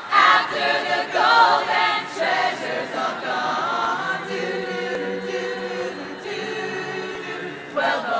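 Mixed-voice choir singing a cappella, no instruments. Quick sung phrases in the first two seconds, then the choir holds a sustained chord for about five seconds before starting a new phrase at the very end.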